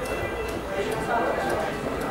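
Indistinct voices of several people talking at once, with a few faint knocks.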